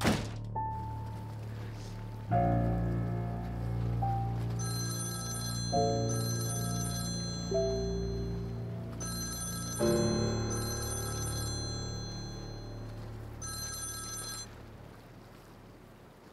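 A mobile phone ringing for an incoming call, a high electronic trill in bursts about a second long: two rings, a pause, two more, then a last one. Soft, sustained background music plays underneath.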